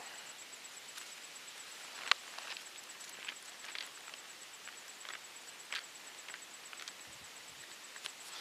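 Bible pages being leafed through by hand: soft paper rustles and flicks, with the sharpest about two seconds in and a few lighter ones after. A faint steady high-pitched whine runs underneath.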